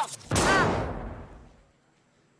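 A sudden blast-like sound effect with a deep rumble, fading out over about a second and a half. A brief shout rides over its start.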